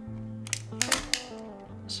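A quick run of sharp clicks from a 35 mm SLR camera's film-loading mechanism as the film leader is pulled onto the take-up spool, over soft background guitar music.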